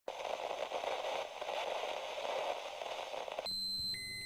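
Television static, a steady crackling hiss, that cuts off about three and a half seconds in and gives way to a steady high-pitched test-pattern tone.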